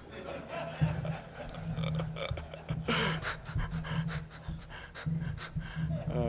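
A man laughing breathily into a microphone, in short irregular breaths.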